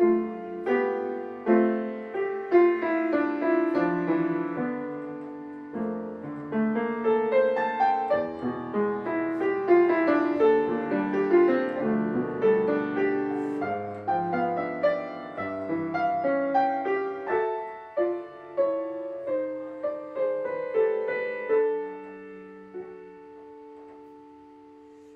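Solo grand piano playing a classical piece, a steady flow of struck notes and chords across the keyboard. Near the end the playing slows and a chord is left ringing and fading.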